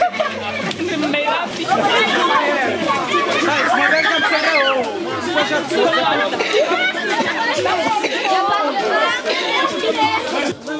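A group of children's voices chattering and calling out over one another, many at once, so that no single voice stands out.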